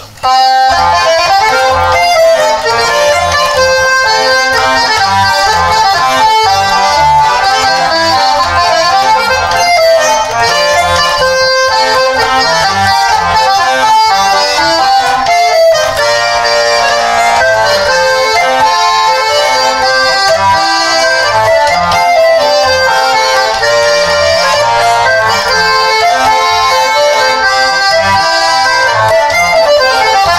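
Hengel Chemnitzer concertina playing a tune, starting about half a second in, with chords under the melody. It is picked up by a condenser microphone and run through a tube preamp, delay and EQ.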